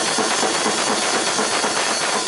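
PDP acoustic drum kit played in a fast metal blast beat: rapid, even kick and snare strokes under a continuous wash of cymbals.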